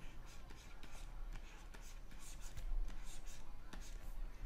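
Stylus scratching across a pen tablet's drawing surface in a run of short strokes, several a second, over a steady low hum.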